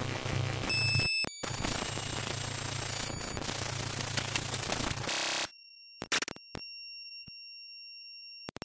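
Harsh electronic noise music: dense static over a low hum, laced with thin steady high tones, broken by abrupt cuts. About five seconds in, the static stops suddenly, leaving only a few faint high tones.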